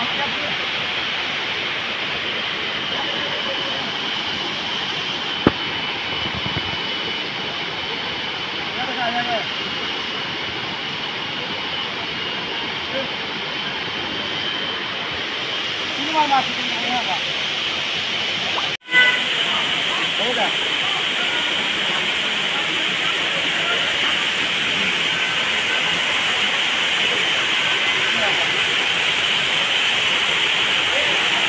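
A steady outdoor hiss, strongest in the upper range, with a few faint short sounds over it; the sound cuts out for an instant about nineteen seconds in and comes back slightly brighter.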